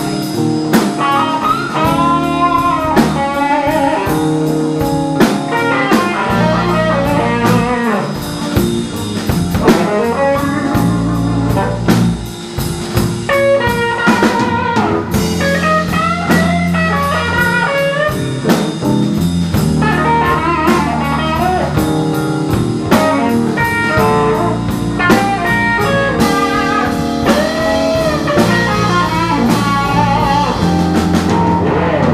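Live blues band playing an instrumental stretch: electric guitar lead lines with bent notes over bass guitar and a drum kit keeping a steady beat.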